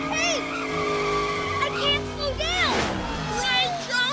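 Cartoon sound effects of a runaway hyperdrive-powered scooter speeding past: a whoosh that drops steeply in pitch about two and a half seconds in, over background music and squeaky chirps.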